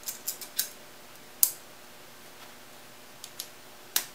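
Small parts clicking as screws and plastic locking clips are fitted by hand to a metal CPU-cooler backplate: a quick run of clicks at the start, one sharper click about a second and a half in, and a few light ticks near the end.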